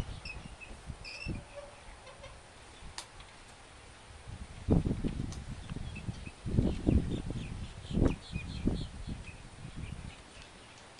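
Faint short bird calls scattered through, with three bouts of low rumbling thumps in the second half, the loudest sounds here.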